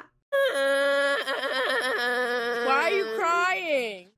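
A boy wailing in one long, drawn-out cry that wavers and then slides down in pitch near the end.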